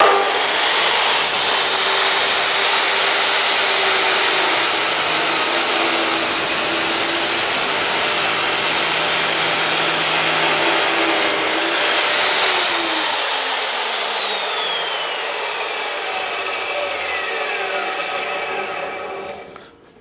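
Bosch GCO 220 cutoff saw starting up with a rising whine and its abrasive wheel grinding through a clamped metal bar for about twelve seconds. The saw is then switched off, and its whine falls steadily as the wheel winds down before it fades out near the end.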